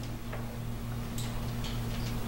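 A pause between spoken phrases: a steady low electrical hum with a few faint ticks.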